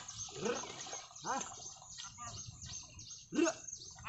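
A man's short rising calls to a pair of plough oxen, three of them, the last and loudest near the end, with high chirping, likely birds, throughout.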